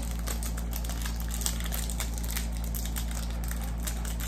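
Small clear plastic jewellery bag crinkling as it is handled and opened: a run of many short crackles, over a steady low hum.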